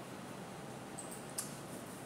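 Steady room hiss with a single sharp click from the computer about one and a half seconds in.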